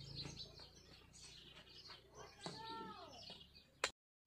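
Faint outdoor birdsong: scattered high chirps, with one longer call a little past halfway that rises and then falls in pitch. Near the end there is a sharp click, and then the sound drops out briefly.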